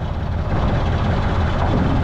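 Truck engine idling steadily with a low rumble, warming up after a cold start.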